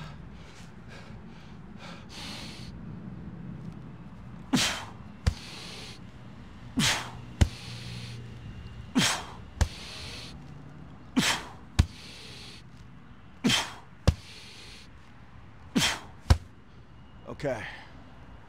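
A man's sharp, forceful exhales on each rep of sandbag squat rows, six times about two seconds apart. Each breath is followed about half a second later by a short thud, over a low steady hum.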